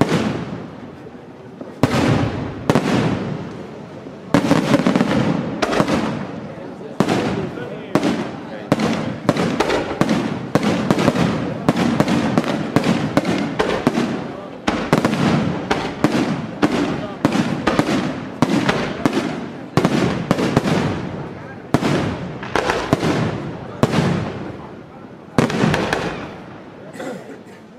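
Aerial firework shells bursting in quick succession: sharp bangs every half second to a second, each trailing off in an echo, thickening into a dense barrage in the middle.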